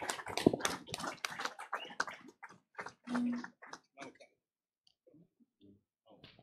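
A small group clapping, the irregular claps thinning out and stopping about four seconds in.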